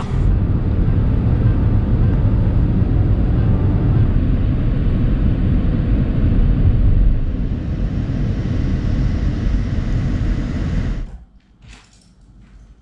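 Steady low road and engine rumble inside the cabin of a Mitsubishi ASX SUV being driven through city streets. It stops abruptly near the end.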